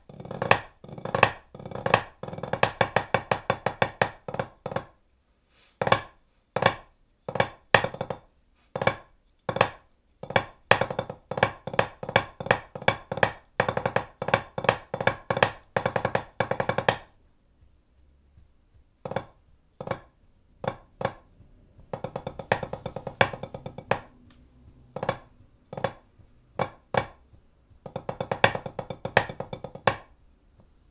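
Los Cabos white hickory parade drumsticks playing a rudimental snare drum solo on a practice pad: fast rolls and accented strokes, with a stretch of soft, sparse taps past the middle before loud, fast rolls return near the end.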